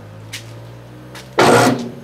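Steady low electrical hum from a CNC mill setup just switched on at its power switch. A short, loud rushing noise cuts in about one and a half seconds in.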